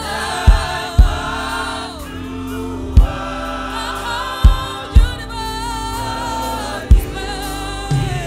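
African gospel worship music: a choir singing over a beat of deep low thumps.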